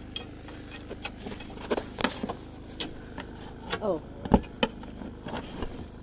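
Metal clinks and knocks as a steel support rod is fitted into its bracket under a popup camper's pulled-out bed, the loudest knock about four seconds in. A portable generator runs underneath as a steady hum.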